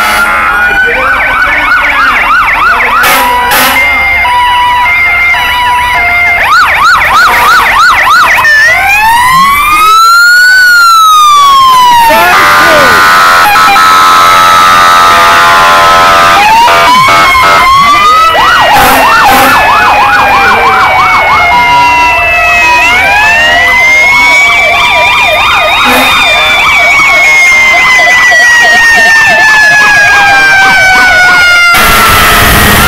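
Fire-truck sirens sounding loudly at close range, several overlapping: fast yelping warbles alternate with slow wails that rise and fall. A steady blaring tone holds for a few seconds around the middle.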